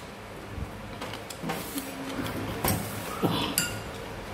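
Chopsticks and a metal spoon clinking against a porcelain rice bowl as a child eats: a few light clinks, the last one near the end ringing briefly.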